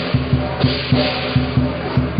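Chinese lion-dance percussion: a big drum beating in a slightly uneven rhythm of about three strokes a second, under a continuous clashing wash of cymbals.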